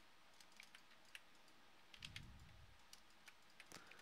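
Near silence with a few faint, irregularly spaced clicks of a computer keyboard and mouse.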